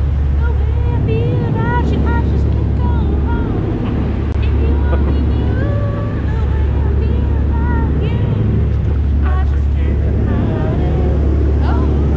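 Passenger boat's engine droning steadily while under way at speed, a constant low hum under the rush of the wake, with voices over it.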